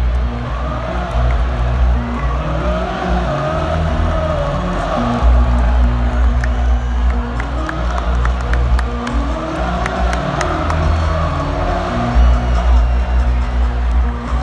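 Band music in a football stadium, with held notes that change in steps, over the voices and cheering of a large crowd on the field.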